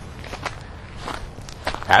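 Faint outdoor background noise in a pause between a man's sentences, with a few soft scattered ticks. His voice starts again at the very end.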